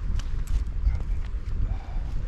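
Wind buffeting the microphone in a heavy low rumble, with a few light knocks and clicks over it.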